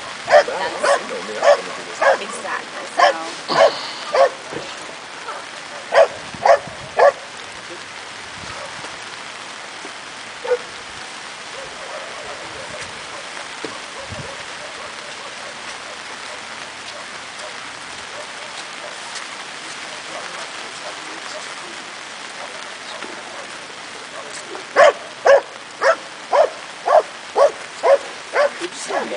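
A dog barking repeatedly at about two barks a second, in two bouts: one for the first seven seconds, another starting about three and a half seconds before the end. In between there is only a steady hiss.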